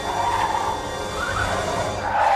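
Soundtrack music with a wavering melodic line that rises briefly near the middle.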